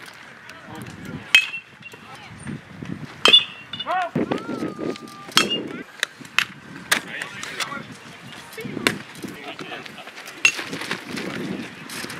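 Sharp leather pops of pitched baseballs hitting the catcher's mitt, several times, amid background chatter and calls from players and onlookers.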